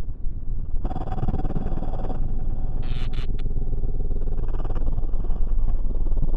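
Dark electronic intro: a heavy low rumbling drone. A brighter hissing layer with a held tone comes in about a second in and cuts off suddenly near two seconds, and a few sharp crackling hits come around three seconds.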